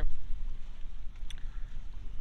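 Wind buffeting the microphone: a low, uneven rumble, with one faint tick just past a second in.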